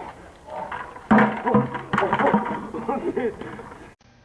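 Young men's voices, from about a second in; the sound cuts off abruptly just before the end.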